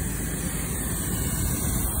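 High-pressure hose jet spraying water onto a mud-covered ship's anchor fluke: a steady hiss and rush of water.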